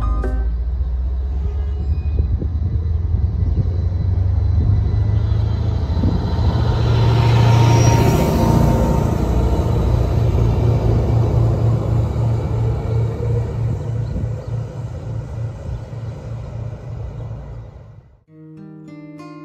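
Arriva Spurt diesel multiple unit (Stadler GTW) moving along the platform. Its low engine rumble and wheel-on-rail noise grow louder toward the middle, then turn into a rhythmic beat that fades near the end as the train draws away.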